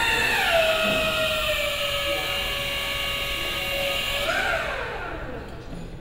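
A small electric motor whining at a steady pitch. The pitch dips just after it starts, then about four seconds in it rises briefly before falling away and fading out.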